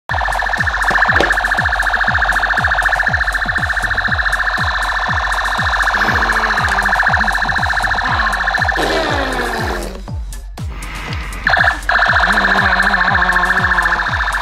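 Battery-powered light-up toy blaster playing its electronic sound effect: a buzzing, siren-like warble with rapid falling zaps about two or three a second. It cuts out about ten seconds in and starts again a second and a half later.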